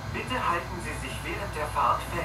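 Indistinct voices talking inside a city bus, over the steady low hum of the Mercedes-Benz Citaro C2 G articulated bus standing at idle.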